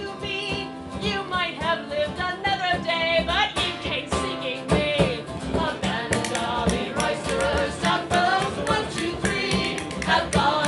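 A woman singing a ballad live with instrumental accompaniment, the rhythmic accompaniment getting busier from about three and a half seconds in.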